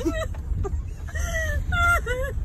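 A girl crying with happiness: high-pitched, wavering sobbing cries, a few short ones and then a longer wail near the end, over the low rumble of a car cabin.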